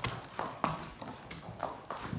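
Horse's hooves stepping on the barn floor: a handful of short, irregular knocks.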